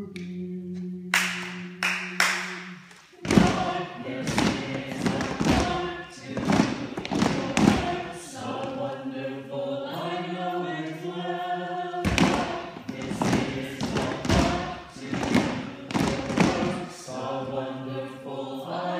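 A group of voices singing a refrain together without accompaniment: a held chord for about the first three seconds, then a moving melody. From about three seconds in, sharp thumps sound over and over along with the singing.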